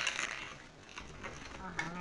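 Paper packaging on a pastry box crinkling as it is handled, dying away in the first half second. A voice comes in near the end.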